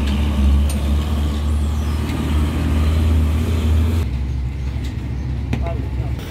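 Heavy diesel truck engine running close by, a steady low rumble that eases off about four seconds in. A couple of light metal clinks come near the end.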